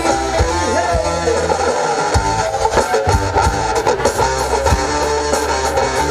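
Live band music with the electric guitar to the fore, over bass and a steady drum beat.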